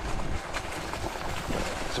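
ENGWE X20 fat-tyre e-bike ridden over a rough trail: steady wind on the microphone and tyre rumble, with a few clacks from the front suspension fork. The fork clatters as it hits the top of its travel.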